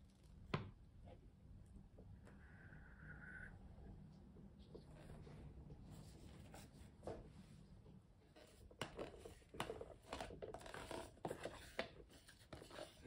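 Near silence with faint handling noises: one sharp tap about half a second in and a run of small clicks and rustles near the end.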